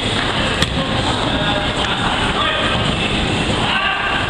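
Reverberant indoor soccer arena din: players' voices over a steady rumble, with one sharp knock of the ball being struck about half a second in.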